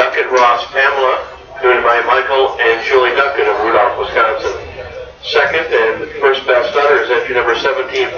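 Speech only: a man talking steadily, with a short pause about five seconds in.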